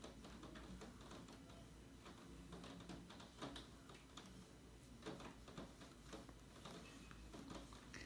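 Near silence: room tone with a low hum, and faint soft scratches and ticks of a watercolour brush being stroked across paper.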